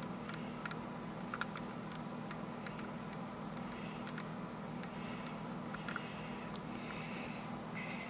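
Glass marbles giving faint, irregular clicks as they knock against each other and the rotating wooden cam of a homemade rotary marble lift, over a steady low hum.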